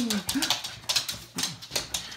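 A small dog whining briefly, twice, among a run of light clicks and taps.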